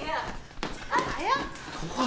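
Speech: a woman's raised voice calling out in Mandarin, her pitch rising sharply in the middle.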